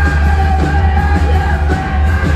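Loud live rock music: a band with heavy bass and a wind section of saxophones and clarinets holding long notes, with a voice yelling over it.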